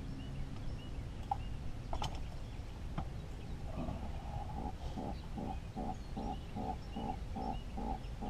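An animal calling in a rapid rhythmic series, about three calls a second, starting about four seconds in and carrying on. Two sharp clicks come earlier.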